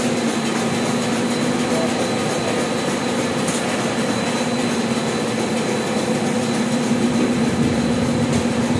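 Carton gluing and pasting machine running at a steady pace: an even mechanical whir over a constant hum.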